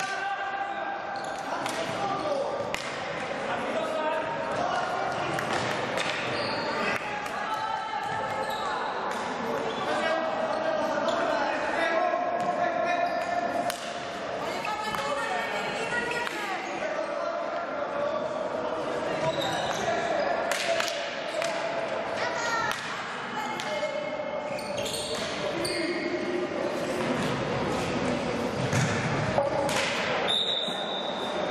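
Indoor field hockey play in a reverberant sports hall: players shouting and calling to each other, with repeated sharp clacks of sticks hitting the ball and the ball striking the side boards, amid footsteps on the wooden floor.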